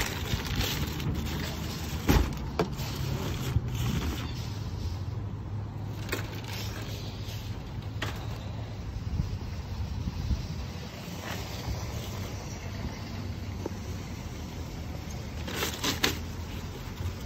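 Groceries being unloaded from a metal shopping cart into a car trunk: scattered knocks and rattles of the cart and packages over a steady low rumble, the loudest knock about two seconds in.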